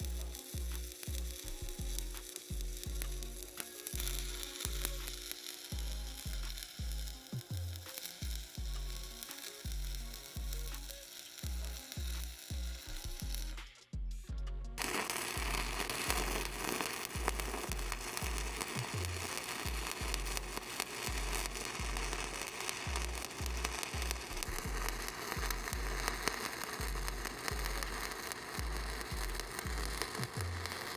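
Stick (SMAW) welding arc crackling and sizzling as a 1/8-inch 7018 electrode burns at about 120 amps. Background music with a steady low beat runs underneath. About halfway through the sound breaks off for a moment, and a second weld starts with a louder, denser crackle.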